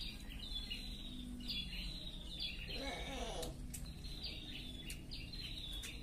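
A small bird chirping over and over, short high chirps about once a second. A faint voice is heard briefly midway.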